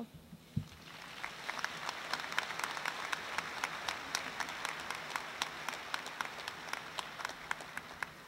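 Audience applause: many hands clapping, building up in the first second, holding steady, then thinning out near the end.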